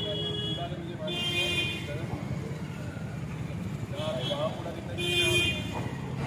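Road traffic running steadily, with vehicle horns honking three times: about a second in, about four seconds in and about five seconds in.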